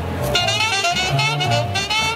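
ROLI Seaboard keyboards playing jazz: a lead melody whose notes bend and waver in pitch, over a low bass line.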